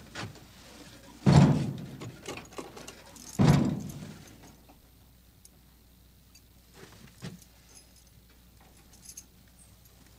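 Two heavy bangs at a wooden cabin door, a couple of seconds apart, each dying away quickly. Faint small clicks follow near the end.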